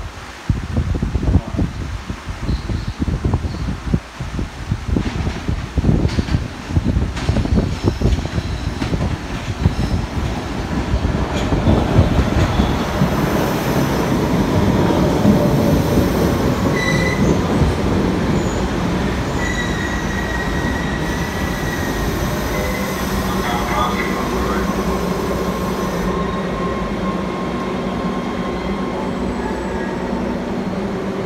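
MBTA Red Line subway train arriving at an underground station platform. Its rumble builds to a steady rush about a third of the way in, the wheels squeal in high tones as it slows along the platform, and near the end it stands with a steady hum.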